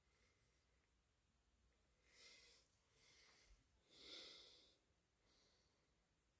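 Near silence, with two faint breaths about two and four seconds in, the second the louder.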